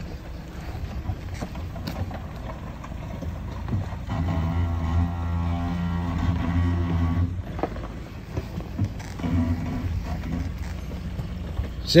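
Suzuki Vitara 4x4's engine running at low revs as the vehicle creeps down a steep dirt bank. The engine note swells louder for about three seconds midway, then drops back.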